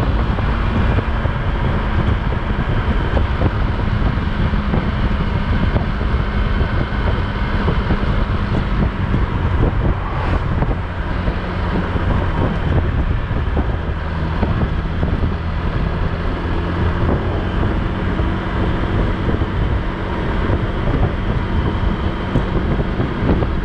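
Wind rushing over the microphone of a motorcycle ridden at steady road speed, with the engine running steadily beneath it.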